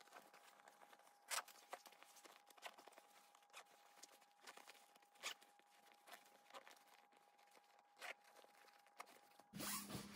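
Faint, scattered clicks and rustles of a nylon compression packing cube's zipper being worked closed by hand, drawing the bag of folded t-shirts flatter.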